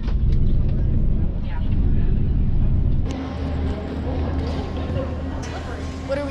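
Low engine and road rumble heard from inside a moving coach bus for about three seconds. It then switches suddenly to a quieter, steady background hum with faint voices.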